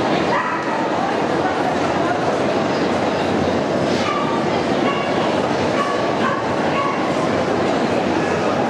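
Dogs barking in short bursts several times over steady crowd chatter in a busy dog-show hall.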